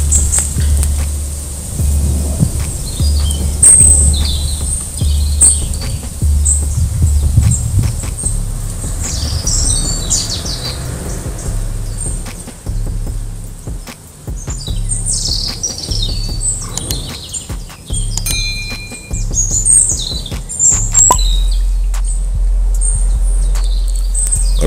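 Small songbirds chirping and singing in short scattered calls, over a steady low rumble.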